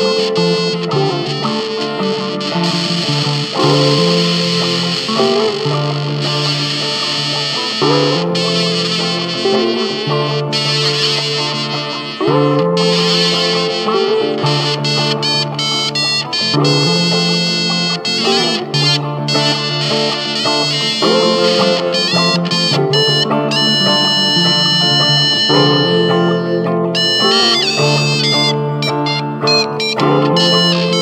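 Instrumental music led by guitar played through effects, a repeating figure whose low notes change about every two seconds.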